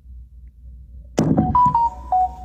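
A faint low hum, then about a second in a sudden knock followed by a run of short electronic beeps at two or three pitches, like a phone's keypad or notification tones.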